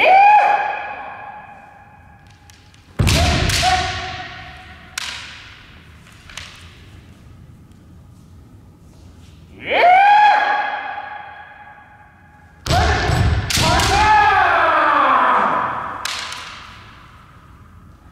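Kendo fencers' kiai, long pitched yells that ring through a large hall, three times, with sharp cracks of bamboo shinai strikes and foot stamps on the wooden floor, the heaviest about three seconds in and just before the last yell.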